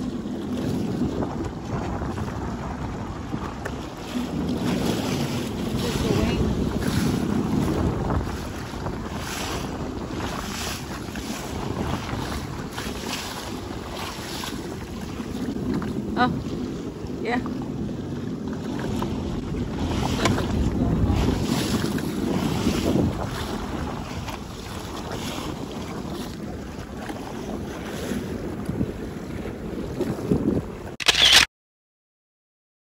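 A jet ski idling low as it creeps through choppy shallow water, with wind buffeting the microphone in gusts and small waves slapping against the hull.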